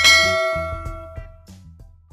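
A bell-like ding from a subscribe-button sound effect strikes and rings out, fading over about a second and a half, over music with a low bass line that fades out near the end.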